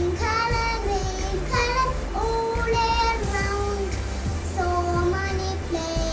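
A young girl singing solo, holding each note for about half a second to a second.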